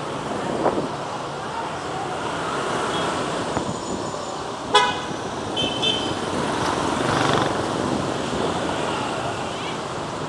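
Street traffic noise of cars and motorbikes passing, with a short vehicle horn toot about five seconds in and a fainter brief beep just after it.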